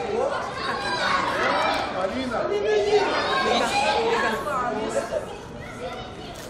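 Indistinct chatter: several voices talking over one another, fading somewhat near the end.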